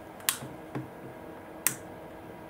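Two sharp clicks about a second and a half apart, with a fainter tick between them, as a small switch on the scooter's wiring is pressed while the controller powers up.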